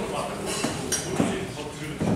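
A few light, sharp clinks, about a second in, against indistinct voices.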